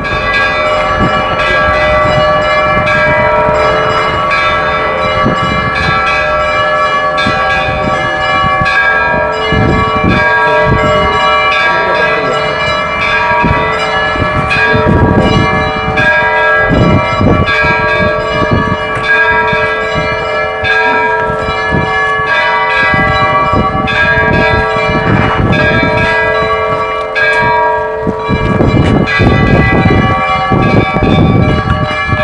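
Orthodox church bells ringing a continuous peal, several bells of different pitches struck over and over so their tones overlap and keep ringing.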